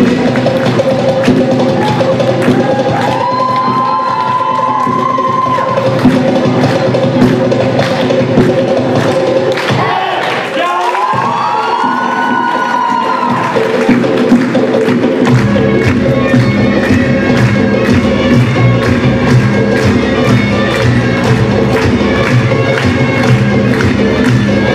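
Lively Azerbaijani folk dance music with a steady beat, played over the hall's loudspeakers for a stage dance, with cheering from the audience. Two long rising-and-falling calls ring out, about four seconds in and again about twelve seconds in, and a deeper bass part comes in about fifteen seconds in.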